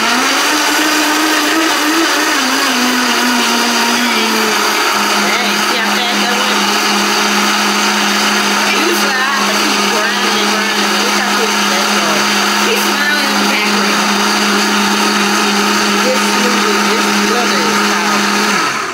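High-powered countertop blender running at full speed, pureeing leafy greens with oat milk. Its motor pitch climbs quickly at start-up, sinks in steps over the next few seconds, then holds steady.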